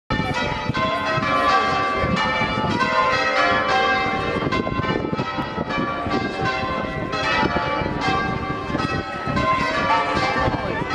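Church bells rung in changes: a rapid, even sequence of ringing strikes, each tone hanging on under the next. A wedding peal.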